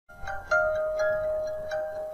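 Intro jingle of bright, chime-like notes, struck one after another about every half second and ringing on over each other.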